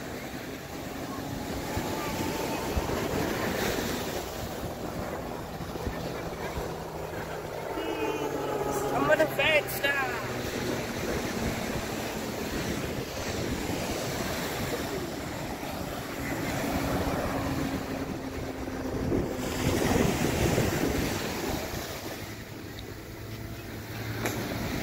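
Steady wind on the microphone over beach surf, with the faint, slowly shifting drone of propeller aerobatic planes overhead.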